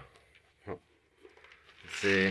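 Quiet room tone with one short spoken word about two-thirds of a second in.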